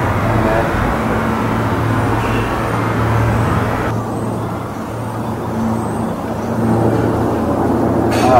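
A steady low rumble under a hiss, like traffic or machinery noise; the upper hiss cuts off suddenly about halfway through.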